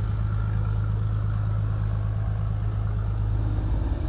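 Boat engine running steadily with a low drone.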